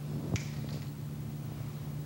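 A single short, sharp click about a third of a second in, over a steady low hum.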